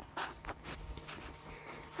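Faint rustling and scuffing with scattered light clicks, the handling noise of a phone being moved about by hand.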